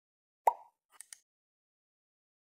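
Click-and-pop sound effects of an animated subscribe-button graphic: a single short pop about half a second in, then a quick double mouse click about a second in.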